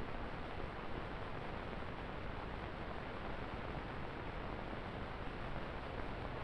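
Steady hiss of an old film soundtrack, with nothing else over it.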